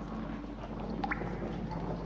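Quiet background: a steady low hum under a faint haze, with a few sparse faint ticks, one about a second in.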